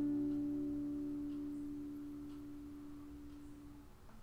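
Steel-string acoustic guitar's final fingerstyle chord ringing out and fading slowly, dying away near the end.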